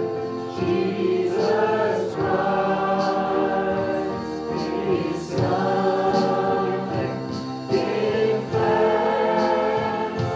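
Live worship band playing a song: several voices singing together over acoustic guitar and keyboard, with occasional drum or cymbal strikes.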